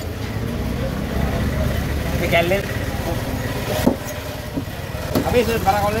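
A steady low engine rumble, like a motor vehicle idling nearby, with voices in the background. There is a single sharp knock about four seconds in.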